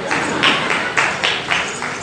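Hand clapping in a steady rhythm, about four claps a second, starting about half a second in.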